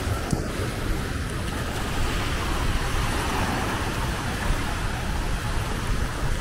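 Steady outdoor rush of wind buffeting the microphone, with small waves washing onto the sand.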